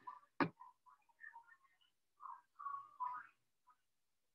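Mostly quiet video-call audio: a short "oh" about half a second in, then faint, broken muttering.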